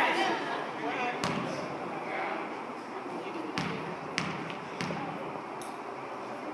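Basketball bounced on a hardwood gym floor, once about a second in and then three times in a row about two bounces a second, as the free-throw shooter dribbles at the line. Crowd chatter runs underneath.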